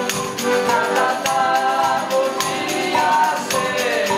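Men of a folia de reis group singing together in chorus on long held notes, with strummed string instruments and a steady percussion beat.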